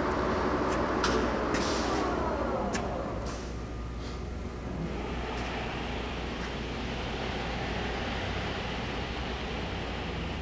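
Spindle and gear train of a large engine lathe winding down, its whine falling in pitch over the first few seconds, with a few light clicks. From about five seconds in a steady whirr carries on.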